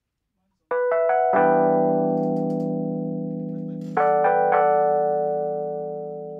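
Track opening on keyboard chords: after a brief silence, notes enter one after another to build a chord that rings and slowly fades, then a second chord comes in the same way about four seconds in and fades in turn.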